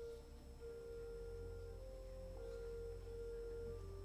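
Church organ playing softly: a slow melody of held, pure-sounding notes that step from one pitch to the next over sustained low bass notes.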